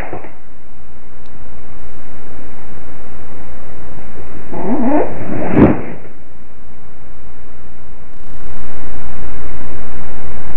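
Loud, steady hiss from a security camera's microphone. About five seconds in comes a short pitched sound that wavers up and down, followed by a sharp click. The hiss grows louder near the end.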